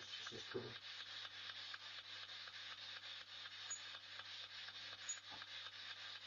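Steady hiss with a low electrical hum under it, the noise floor of a boosted microphone, with a short murmured voice in the first second.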